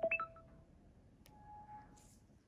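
Short electronic beeps. A quick cluster of tones comes right at the start, then one longer steady beep about a second and a half in.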